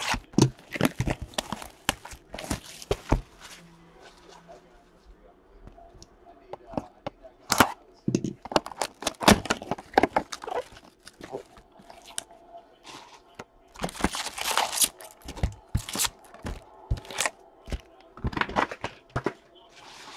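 A cardboard hobby box of trading cards being opened and its foil card packs handled and torn: irregular crinkling, tearing and sharp clicks, with louder bursts about halfway through and again near the end.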